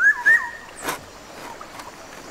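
A short, high squeal that rises and then holds for about half a second, followed about a second in by a single rasp of a hand saw cutting through a wooden branch.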